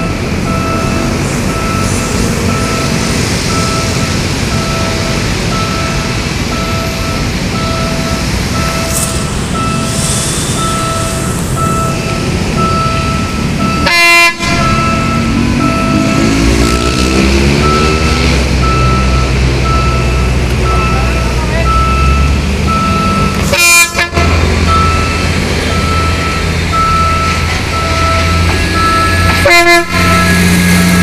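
A repeating electronic warning beep, about one a second, over the running of a diesel multiple unit. About halfway through, the railcar's diesel engine rises in pitch and falls back, then settles into a deep steady rumble.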